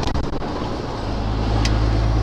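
Heavy goods lorry's diesel engine droning inside the cab, growing louder about a second in as the truck accelerates. There are a few quick clicks near the start and a single short tick near the end.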